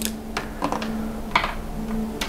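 About half a dozen light clicks and taps, irregularly spaced, from a Mibro Watch GS smartwatch and its magnetic charging cable being handled on a table top, over a faint steady hum.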